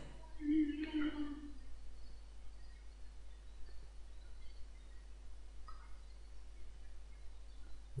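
A short hummed vocal sound, a drawn-out 'mmm', about half a second in, then a faint steady background of microphone hiss and electrical hum.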